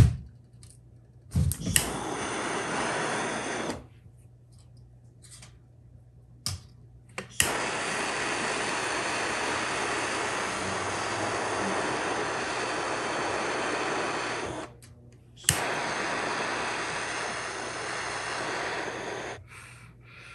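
Handheld gas torch burning with a steady hiss while heating a brass strip for soldering. It is lit three times, each start marked by a click: briefly about a second and a half in, then for about seven seconds, then for about four seconds.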